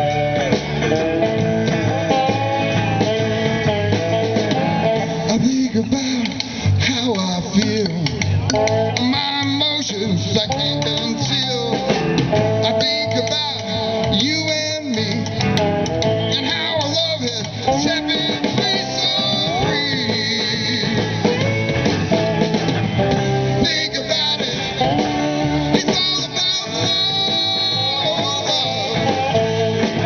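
Live blues band playing: two electric guitars over electric bass and a drum kit, amplified through a PA.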